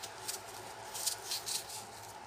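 A small scalpel-like knife cutting slits into a raw peeled onion: several short, crisp crunching scrapes.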